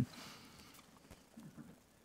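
Quiet room tone with a few faint, soft sounds about a second and a half in.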